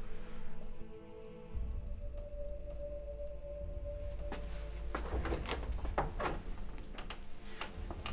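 Film score music: sustained low drone and held tones. Over it, in the second half, come a few separate sharp knocks or clicks.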